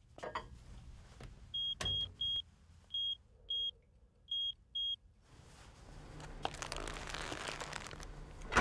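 Microwave oven: a sharp click as the door shuts, then seven short high beeps from the keypad as the time is entered, and about five seconds in the oven starts running with a steady hum and fan noise.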